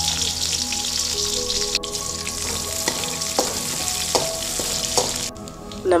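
Sliced shallots and green chillies sizzling in hot oil in a metal kadai, with a few clicks of a spatula against the pan. The sizzle cuts off shortly before the end.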